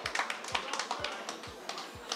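Scattered handclapping from a small group of people, irregular claps that thin out and grow quieter over the couple of seconds.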